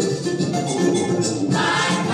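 Group of voices singing an Umbanda song over hand percussion; higher, brighter voices come in about one and a half seconds in.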